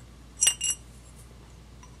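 Two light metallic clinks a quarter second apart, each with a brief high ring: steel parts of a 5C collet stop (collet, threaded rod and lock nut) knocking together as they are handled.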